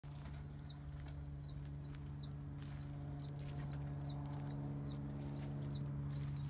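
A bird giving a short, high, arched chirp over and over, about one every 0.8 seconds, over a steady low hum.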